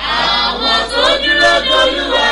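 Voices singing in a choir-like chorus, holding long sustained notes that come in abruptly at the start.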